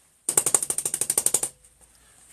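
A large bristle brush tapped rapidly against a painting canvas, a quick run of about fifteen taps a second for just over a second, then stopping abruptly.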